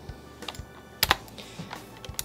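Computer keyboard keys being pressed for editing shortcuts: a faint click about half a second in, then a sharper, louder key click about a second in.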